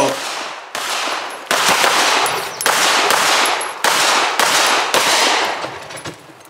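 Six gunshots fired at an uneven pace, roughly a second apart, each with a long echoing tail.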